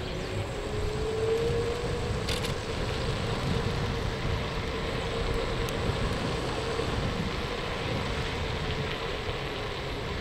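Wind buffeting the microphone and a road-noise rumble while moving along a street, with one steady humming tone that rises slightly about a second in.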